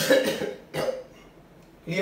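A man coughing, twice: a loud cough at the start and a shorter one just under a second later.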